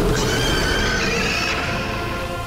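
A screech sound effect for a demon-fire eagle: a high, wavering cry that starts just after the beginning and lasts about a second and a half, over soundtrack music.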